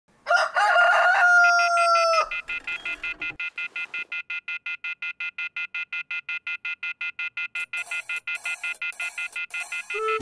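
A rooster crows once, one long call that drops at its end. Then an alarm rings in a rapid, even pulsing rhythm, about six or seven rings a second.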